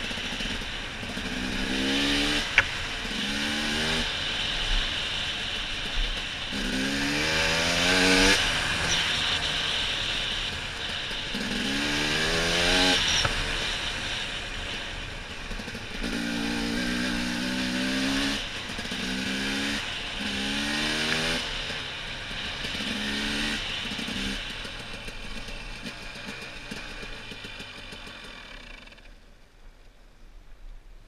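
Dirt bike engine heard from the rider's helmet, revving up again and again, its pitch rising with each burst of throttle, over steady wind and trail noise. A sharp knock sounds about two and a half seconds in, and the engine drops away to a low, quiet run near the end as the bike slows.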